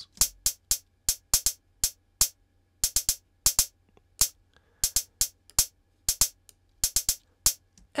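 Closed hi-hat sample in an Ableton Live drum rack playing a sparse, irregular sixteenth-note pattern made by the Rhythm generative tool: short, sharp ticks, two to four a second. The pattern shifts partway through as the steps setting is changed.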